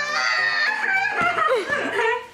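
Young women laughing in high voices over background music.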